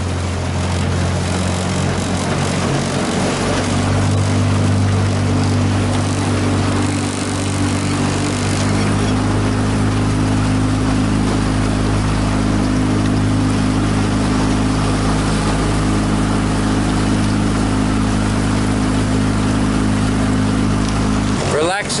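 Outboard motor of a small aluminium coaching boat running steadily at low speed, with water and wind noise around the hull; its pitch shifts slightly a few seconds in.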